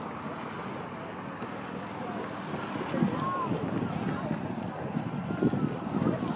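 Wind buffeting the microphone, with faint voices and a laugh at the start.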